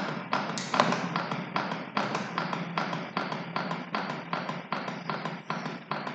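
CPR training manikin clicking under rapid chest compressions: a quick, even run of sharp clicks, about four a second.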